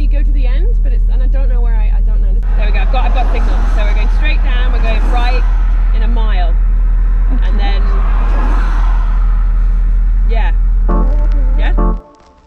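Steady low road and engine drone inside a moving Porsche Cayenne Turbo's cabin, with people talking over it.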